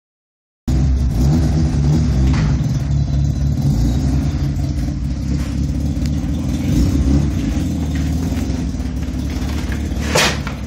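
Mazda RX-7's rotary engine running at low revs, a steady low exhaust note with small rises and falls in level.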